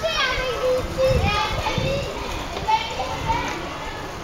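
A group of young children chattering and calling out, their high voices overlapping.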